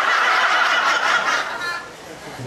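A small audience laughing after a punchline, the laughter dying down near the end.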